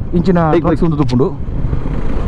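A man talking over the steady rush of wind and road noise from a moving motorcycle. The talk stops about two-thirds of the way in, leaving only the wind and riding noise.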